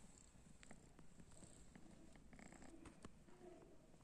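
A young cat purring faintly, close to the microphone, with a few soft clicks.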